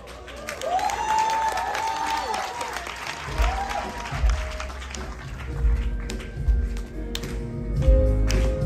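Audience applause, then the instrumental intro of a backing track starts about three seconds in, with heavy bass and steady sustained chords.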